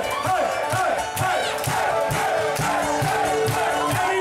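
Live band music with a steady kick-drum beat of about two thumps a second, under a large crowd shouting and singing along.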